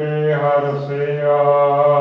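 A man's voice chanting a Gurbani verse in a slow, drawn-out recitation, holding one long phrase.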